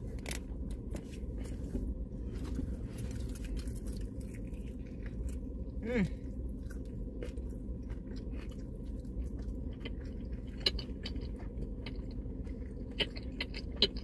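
Close-up chewing and biting of crispy fried chicken, with many small crisp crunches throughout. A brief hummed 'mm' about six seconds in.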